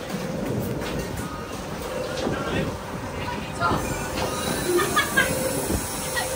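Steady machinery rumble with a constant hum aboard a dive boat, with faint voices in the background.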